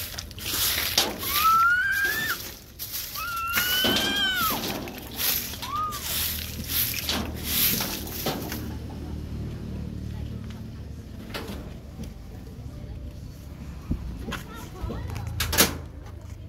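Straw broom sweeping a dirt and gravel floor in repeated scratchy strokes, roughly one a second, that stop about eight seconds in. Puppies whine three times in the first six seconds, short high whines that rise and then fall.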